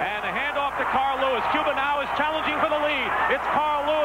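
A man's voice giving fast, running commentary on a sprint relay race as it is run.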